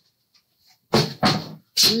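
A brief pause, then a woman's voice speaking from about a second in.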